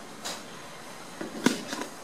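A few light clicks and knocks as a plastic hot glue gun and strips of plastic half-pearls are handled and set down on a table. The sharpest click comes about one and a half seconds in.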